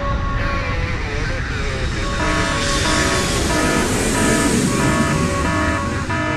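Music playing, with short chords repeated at an even pace from about two seconds in, under a jet airplane flying over as a sound effect: a rising whooshing roar.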